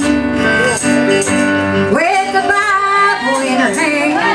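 A woman singing a gospel song into a microphone over instrumental accompaniment, holding and bending long notes between lines.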